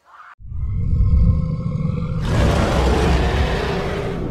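Edited outro sound effect: a deep, loud rumble starts about half a second in. About two seconds in, a loud rushing whoosh joins it and carries on over the rumble.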